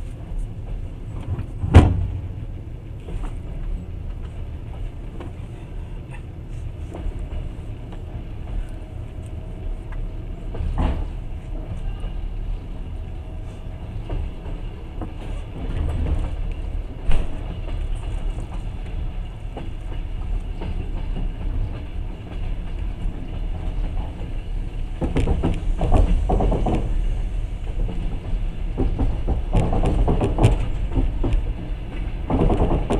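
Passenger train running slowly along the track, heard from inside the carriage: a steady low rumble with a sharp knock about two seconds in, the loudest sound, then two smaller knocks later, and the running noise grows louder and rougher near the end.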